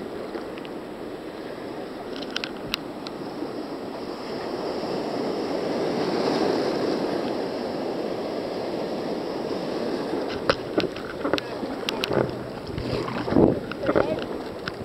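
Surf breaking and water rushing around a sea kayak, with wind on the microphone. The rush swells to its loudest about halfway through as a wave breaks alongside, and sharper splashes come in the last few seconds.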